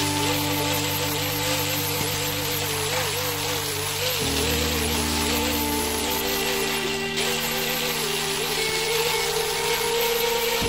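Background music with sustained chords that change about four seconds in, over an angle grinder grinding a steel file blade, its whine wavering in pitch under load.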